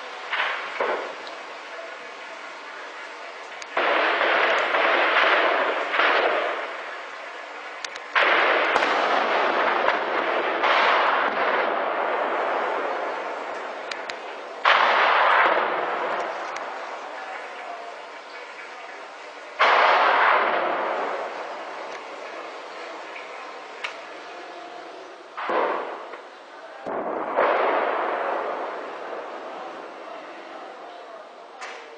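Tank shelling: about six heavy booms, each starting suddenly and dying away slowly over several seconds.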